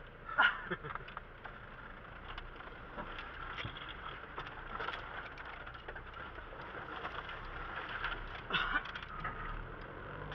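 Cabin noise of an off-road vehicle driving over rough dirt terrain: a steady engine and road hum, with small rattles and knocks from the body. There are two brief loud bursts, one about half a second in and another near the end.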